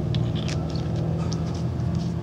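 Steady low mechanical hum, with a few light clicks from small parts of an aluminium fire piston being handled and turned in the fingers.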